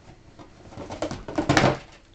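Handling and rummaging noises: a run of knocks and rustles as shoes are picked through and one is lifted out, loudest about a second and a half in.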